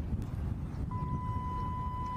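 Steady low rumble of outdoor background noise. About a second in, a steady high-pitched tone starts and holds without changing.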